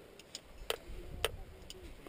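Sharp metallic clicks of climbing hardware as rope is taken in by hand at a belay, the two loudest about half a second apart in the middle, over a low rubbing rumble of handling noise.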